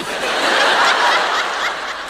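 A large audience laughing together, loudest in the first second and tapering off toward the end.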